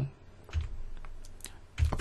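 A few clicks of computer keys, stepping a chess program through the moves of a game.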